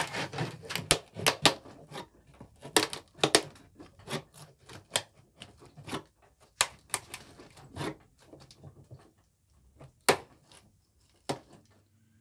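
Irregular sharp clicks and knocks of wooden paddle pop sticks being wedged into the seam between a fibreglass tank and its mould to start the release, thinning out and stopping near the end.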